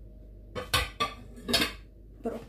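Dishes being handled in a kitchen: three short clattering knocks about half a second apart, with a slight ring.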